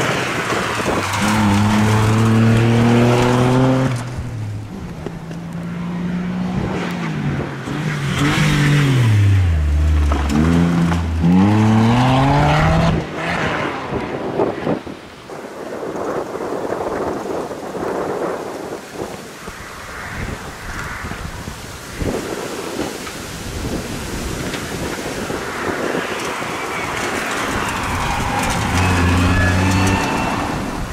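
Toyota Yaris rally cars driven hard: an engine holds high revs, then the revs fall away and climb steeply again around ten seconds in. A rushing noise without a clear engine note follows, and a car's engine comes up again near the end.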